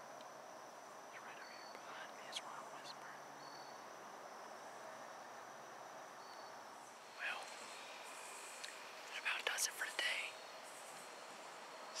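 A man whispering in short breathy bursts, mostly in the second half, over a faint outdoor background with a few short high peeps every couple of seconds.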